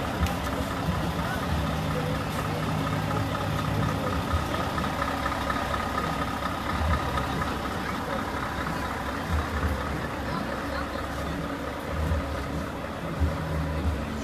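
Truck engine idling steadily, with voices in the background.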